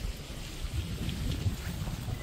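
Steady rain falling on wet pavement and parked cars, with a low rumble underneath.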